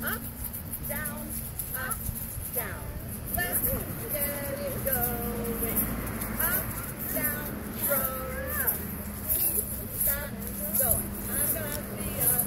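Egg shakers rattling over and over, a high hissy shake, under the voices of small children and adults.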